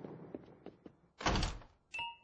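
Cartoon door sound effect: a single short, heavy thud of a door a little past a second in.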